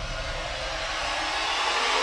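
Logo-sting sound effect: a whoosh of noise swelling steadily louder, while the low rumble of the hit before it dies away.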